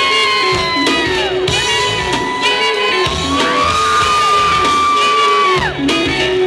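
A live reggae band playing an instrumental passage. Three long, high held notes ride over the band, each falling away in pitch at its end.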